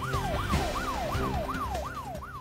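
Police-style siren sound effect under a breaking-news graphic: a fast repeating wail, each cycle jumping up and sliding down in pitch, about three to four times a second.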